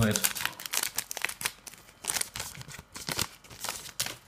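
Scissors snipping open a plastic art-card pack, and the wrapper crinkling as it is handled: a run of irregular crackles and clicks.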